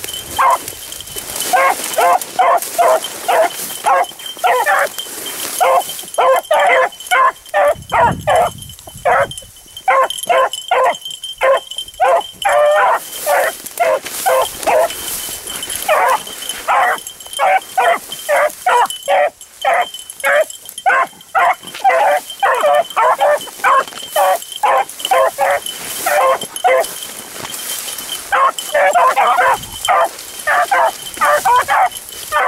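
Beagles barking in full cry as they run a rabbit's track: a quick, almost unbroken string of barks with only brief pauses.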